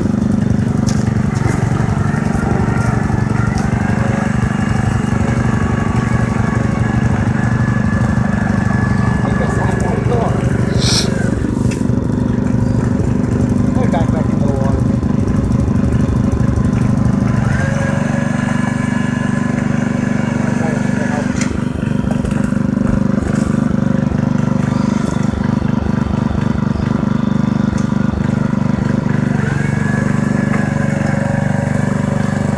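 ATV engine running steadily as the four-wheeler is driven through shallow creek water.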